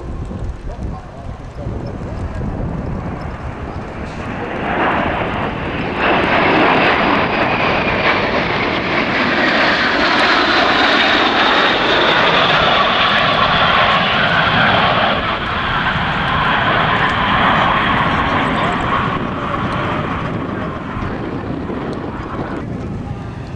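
A six-ship formation of L-39 Albatros jet trainers passing overhead, their turbofan engines a loud rushing jet noise with a high whine. It swells about four to six seconds in, stays loudest through the middle and slowly eases as the formation moves away.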